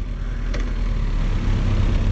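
A low, steady motor-vehicle engine rumble that grows louder in the second half, with a faint click about half a second in.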